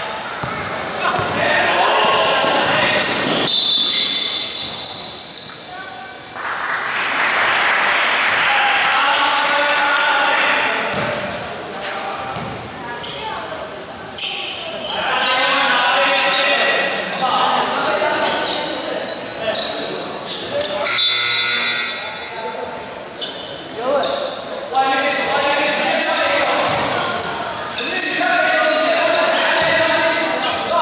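Basketball being dribbled and bounced on a hardwood gym court during a game, echoing in a large hall, with players and spectators shouting and calling out throughout.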